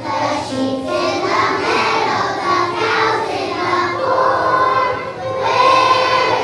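A large group of young children singing together in unison, with a loud held note near the end.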